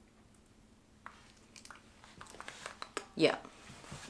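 Small wet clicks and smacks of lips being worked with lip gloss. They start about a second in and come faster and louder toward the end.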